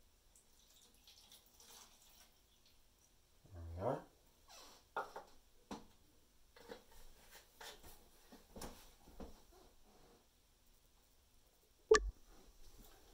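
Rubbing alcohol pouring faintly from a plastic bottle into a plastic measuring container in the first few seconds. Then scattered light clicks and knocks of containers being handled, with one sharp knock near the end.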